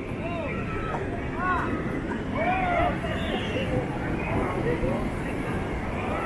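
Steady rush of wind and breaking surf, with people's voices talking and calling nearby over it.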